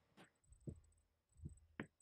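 Near silence, broken by a few faint, brief low thumps and one soft click near the end.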